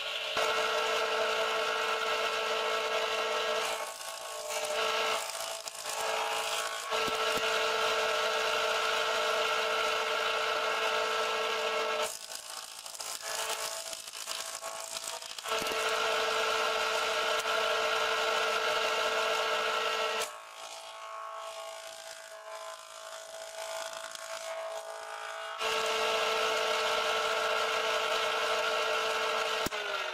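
Electric jointer running and planing a pine 2x4: a steady whine with the hiss of the cutterhead biting the wood, in four loud stretches of a few seconds each, with quieter gaps between the passes.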